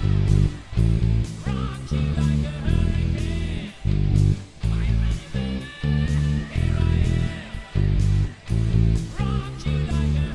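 Electric bass played with the fingers along to a loud hard-rock band recording: heavy low notes and chords hit in short stop-start blocks, with drum hits and a higher guitar or vocal line over them.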